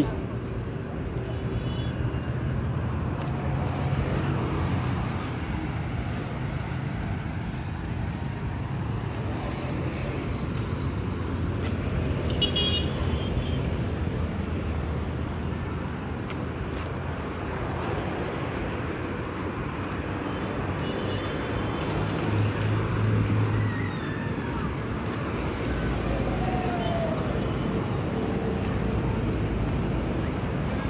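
Road traffic: cars and motorcycles running and passing on a city street, with a steady low engine hum. A short high beep, like a horn toot, about twelve seconds in, and a louder engine passing close by around twenty-three seconds.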